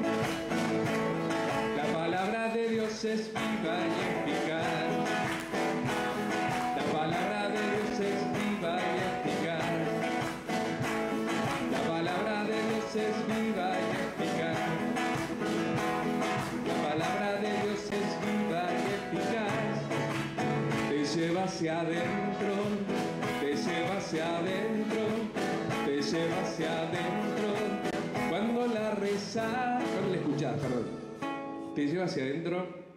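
Acoustic guitar strummed steadily while a man sings along.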